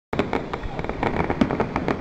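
Aerial fireworks bursting and crackling, a rapid, irregular string of sharp pops.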